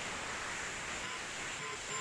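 Vacuum cleaner running, heard as a steady even rushing noise through a student's open microphone on an online call.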